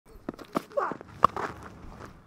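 A cricket bowler's footfalls on the pitch, then a single sharp crack of the bat striking the ball about a second and a quarter in, a shot that goes for six.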